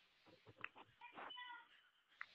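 Near silence, with a few faint clicks about half a second in and a brief, faint high-pitched cry about a second in.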